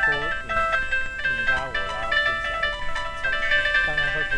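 Layered synthesized tones from an interactive sound program, stepping between held notes several times a second as movement in the camera's view triggers them. Wavering, voice-like sliding pitches run underneath.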